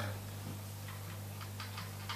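Faint ticking of a wall clock over a low steady hum.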